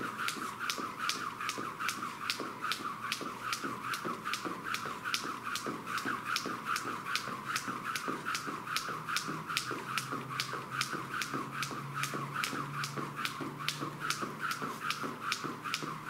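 Skipping with a jump rope: the rope and the landings tap the floor in a steady rhythm, about three times a second.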